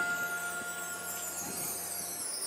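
A struck chime note from a marching band's front ensemble ringing on and fading slowly, with a faint high wash above it.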